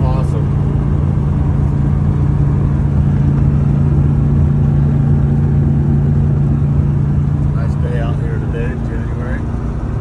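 Steady engine drone and road rumble inside the cab of a 1973 pickup truck cruising at highway speed, with a constant low hum that barely changes.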